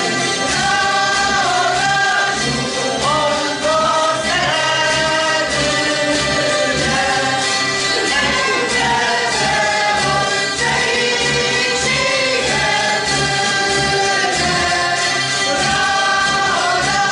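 A Hungarian citera (fretted box zither) ensemble strumming a folk tune in a steady beat, with the players singing the melody together as a group.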